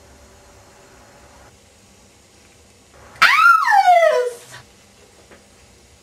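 A single high wailing cry, starting about three seconds in and falling steadily in pitch for about a second and a half.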